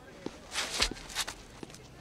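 Footsteps on street pavement: a few separate shoe steps and scuffs, the loudest just under a second in.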